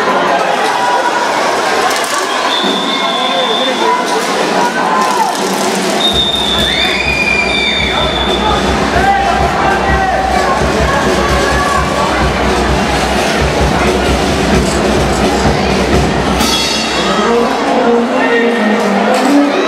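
Voices and music mixed together in a large hall, with a deeper rumble joining about six seconds in.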